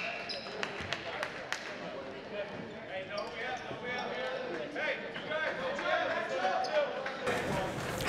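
Crowd chatter in a school gymnasium, with scattered thuds of a basketball bouncing on the hardwood floor.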